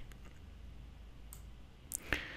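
Two faint computer mouse clicks, one about a second and a half in and a sharper one near the end, over a low steady hum.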